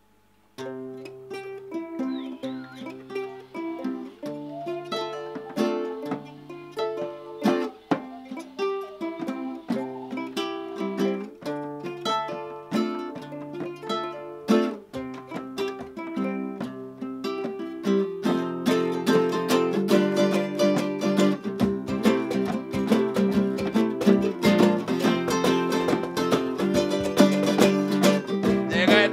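Acoustic guitar and ukulele playing an instrumental intro in a small room. The plucked notes begin about half a second in, and the playing grows fuller and louder about eighteen seconds in.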